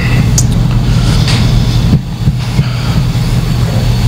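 A loud, steady low hum with a rumbling background noise and no speech.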